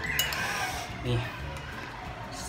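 Quiet handling while a plate of noodles is held up and a forkful lifted, with a brief sharp click just after the start and one short spoken word about a second in.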